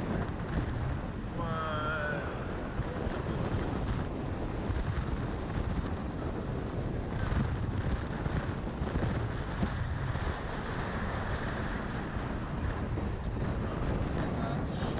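Wind rushing over the ride's onboard camera microphone as the Slingshot capsule swings through the air, a steady buffeting noise. A short, wavering vocal sound from one of the riders about two seconds in.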